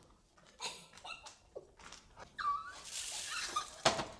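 Children's stifled giggles and squeaks, quiet and broken up, with a short high squeal about two and a half seconds in and a sharp click near the end.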